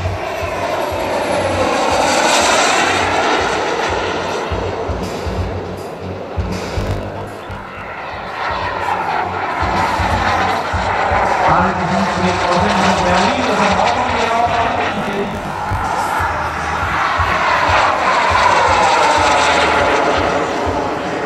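Model jet turbine of a radio-controlled F-104S Starfighter flying passes, its whine swelling and fading with sweeping rises and falls in pitch as it goes by: loudest about two seconds in, again around the middle, and near the end.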